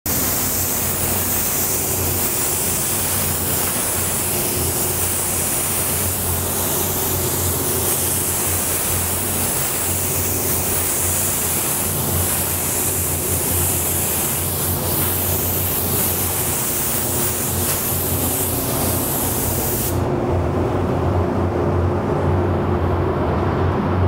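Gravity-feed automotive spray gun hissing steadily as it sprays silver sealer onto a panel. The hiss cuts off suddenly about 20 seconds in, leaving the steady hum of the paint booth's ventilation.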